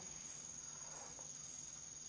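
A quiet pause with low room noise and a faint, steady high-pitched whine.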